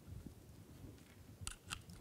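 Faint handling noise of an electrical lead and its plug being worked in the hands, with a couple of small clicks about one and a half seconds in.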